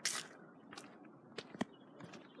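Mostly quiet, with a brief rustle at the start and a few faint taps, the last two close together near the end.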